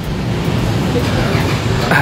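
Steady outdoor street noise with a low rumble, and faint voices of people nearby.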